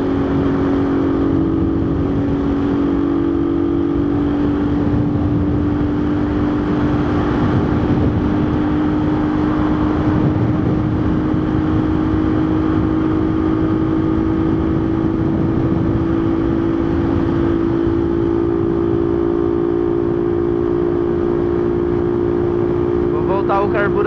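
Motorcycle engine running at a steady cruise in its break-in phase, with wind noise on the microphone; the engine note holds steady and creeps up slightly in pitch over the stretch.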